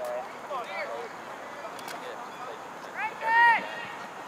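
Voices shouting across an outdoor soccer field: short calls about half a second in, then one loud, drawn-out shout about three seconds in, over steady open-air background noise.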